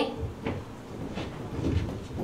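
Low room noise in a small live venue, with a few soft short knocks and thumps spaced about half a second apart.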